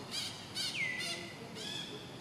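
Birds calling in the trees: a run of about four short, high chirping calls, one of them sliding down in pitch near the middle.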